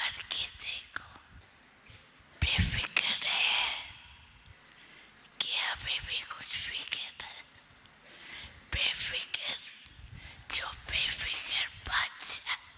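Speech only: an elderly woman talking into microphones in short, breathy phrases separated by pauses.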